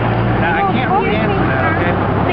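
Voices talking over one another, with a steady low hum underneath.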